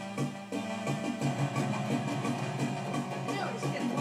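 Electronic home spinet organ played by a toddler pressing the keys: held, droning notes with an even pulsing pattern running underneath.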